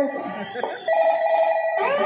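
A mobile phone ringtone played into a stage microphone: a warbling ring held on one pitch for about a second, then a run of sliding notes.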